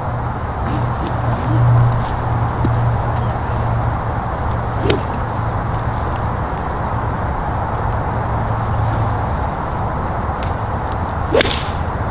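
A golf iron swishes through a practice swing about five seconds in. Near the end comes a sharp crack as the club strikes the ball cleanly on the tee shot. A steady rush of wind on the microphone runs under both.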